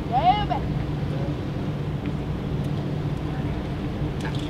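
Steady low hum of the steamship SS Alpena's machinery as she passes close by. Near the start there is a brief high call that rises and falls.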